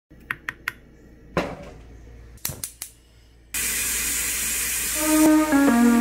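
Light clicks and taps as ground coffee is added to a stovetop moka pot's filter basket. About three and a half seconds in, a loud steady hiss starts suddenly, and guitar music comes in near the end.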